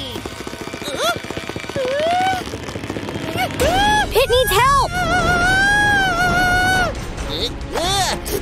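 Cartoon character voice making wordless effort sounds and squeals, then a long wavering yell held for about two seconds from around the middle, over background music.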